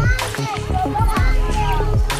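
Several children's high voices calling out over background electronic music with a steady beat.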